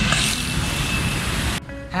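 Street traffic noise, a steady rush of road noise, which cuts off suddenly about a second and a half in.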